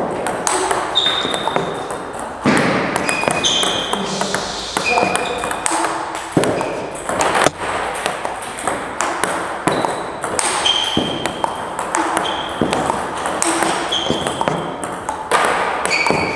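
Table tennis multiball drill: plastic balls clicking off the bats and bouncing on the table in a fast, unbroken stream of several hits a second.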